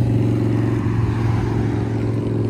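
A car engine running close by, a steady low hum.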